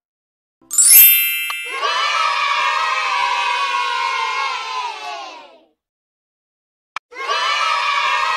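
A bright chime with a rising sparkle, then a crowd of children cheering for about four seconds. After a short silence and a click, the children's cheering starts again near the end.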